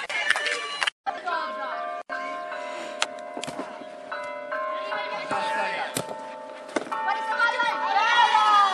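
Several steady ringing tones held for seconds at a time and changing pitch now and then, with a few sharp knocks.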